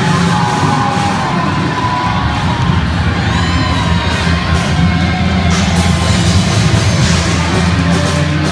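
A live rock band with drum kit and electric bass playing loudly, with the crowd cheering and shouting over it. There are a few whoops about three seconds in.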